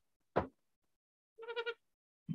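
Trumpeter hornbill giving one short pitched call about one and a half seconds in, after a single sharp click.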